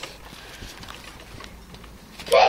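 Faint, soft thumps and rustling from a garden trampoline as children bounce on it, with handling noise from a phone held by someone bouncing on the mat.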